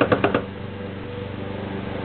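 A few short clicks, then a custom Volkswagen roadster's machinery running with a steady low hum and a fast, even ticking.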